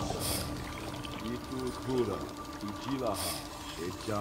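Film soundtrack: a low, voice-like pitched sound gliding up and down, with two short bursts of hiss, one near the start and one about three seconds in.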